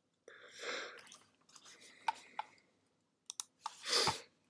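A few quiet clicks like a computer mouse being pressed, with soft short noises between them and a louder one at the end.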